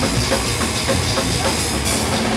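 Death metal band playing live: pounding drums under heavy distorted guitars, loud and dense.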